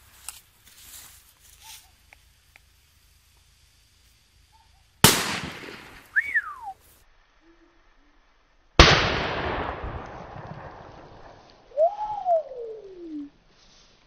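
Piromax Crash firecracker bangs, each with 1.2 g of explosive: two sharp bangs about four seconds apart, each dying away over a second or more, the second with a longer tail. A short rising-then-falling whistle follows each bang.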